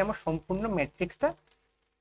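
Speech only: a voice talking, which stops about three-quarters of the way through, leaving a short silence.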